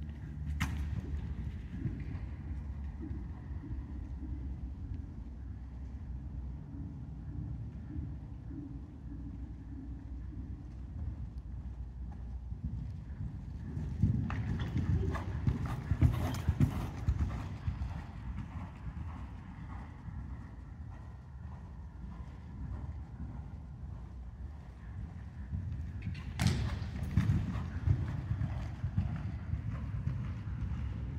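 Horse's hoofbeats on a sand arena surface as it canters, over a steady low rumble. The hoofbeats are loudest as the horse passes close about halfway through, with another loud spell near the end.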